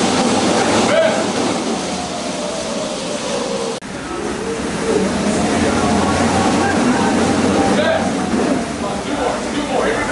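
Curved manual treadmills in use: the slat belts rumble steadily under sprinting footfalls, with voices in the gym behind.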